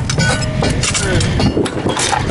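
Steady rushing noise of wind and water on an open-water sailboat, with faint voices underneath.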